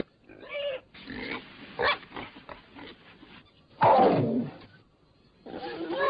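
Warthog squealing and grunting: a few short calls, then a loud falling squeal about four seconds in, and loud continuous squeals near the end.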